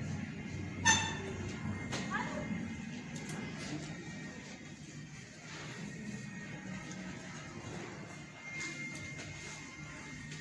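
Quiet background music plays steadily, with a brief, sharp, high-pitched sound about a second in standing out as the loudest moment.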